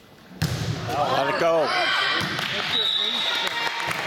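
A volleyball served with one sharp smack about half a second in, then spectators yelling and cheering excitedly through the rally, with a short high whistle near the end.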